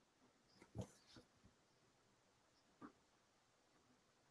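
Near silence: room tone over a video call, with a few faint, brief sounds.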